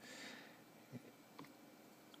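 Near silence with two soft taps on an iPad touchscreen, about a second in and half a second apart.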